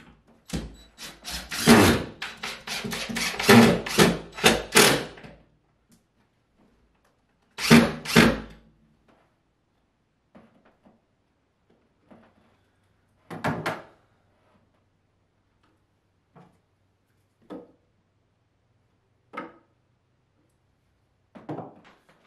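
A quick run of loud wooden knocks and clatters for about five seconds, then two more thuds around eight seconds in, and a few light taps and clicks after: a wooden shelf cleat and a level being knocked and fitted against a wall.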